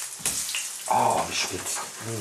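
Fish fingers sizzling in hot oil in a frying pan as more are laid in, with a few sharper crackles about a second and a half in.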